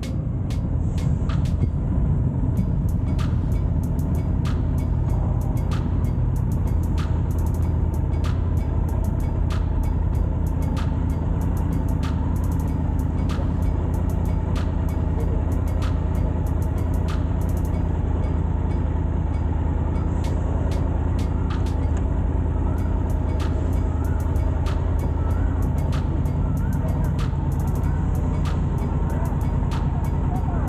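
Triumph Tiger 850 Sport's three-cylinder engine running steadily at low revs, under background music.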